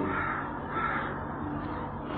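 Faint bird calls, two short ones in the first second, over a low steady hum.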